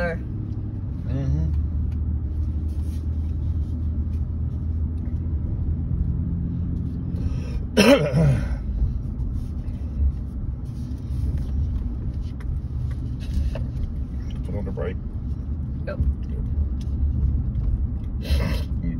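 Inside the cab of a truck driving slowly: a steady low engine and road rumble. A short burst of voice comes about eight seconds in.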